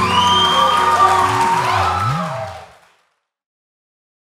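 The final guitar notes die away as a small audience cheers and whoops, the sound fading out to silence about three seconds in.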